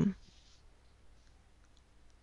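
Near silence: room tone with a low hum and a couple of faint small clicks, about a second in and near the end.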